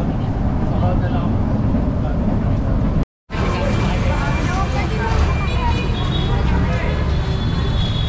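Steady low rumble of a light-rail train carriage in motion, heard from inside among the passengers. About three seconds in it breaks off abruptly and gives way to the noise of a crowded street market: many people talking, with steady background rumble.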